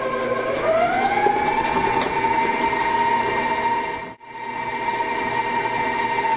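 Electric stand mixer running with its paddle beating cake batter of creamed butter, sugar and eggs: a steady motor whine that rises in pitch about half a second in as it speeds up, then holds. It breaks off for an instant just after four seconds.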